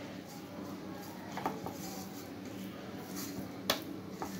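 Oiled hands patting and rubbing a ball of naan dough in a stainless steel bowl: faint soft pats and knocks, with one sharp click against the bowl just before the end.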